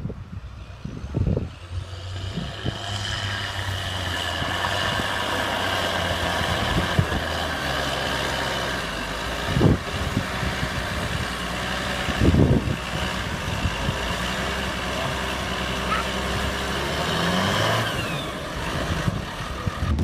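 Fendt tractor's diesel engine running steadily as it pulls a forage wagon up onto a silage clamp, with a couple of short knocks a little before and after the middle.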